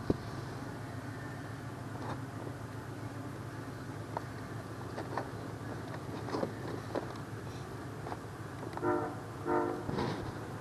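Steady low hum with scattered light clicks and taps, then two short pitched beeps about half a second apart near the end.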